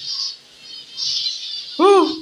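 A zebra finch colony chattering in high chirps. Just before the end comes a short voiced exclamation, rising then falling in pitch, which is the loudest sound.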